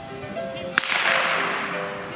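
A single black-powder musket shot a little under a second in: a sharp crack that trails off over about a second. Background music with held notes runs underneath.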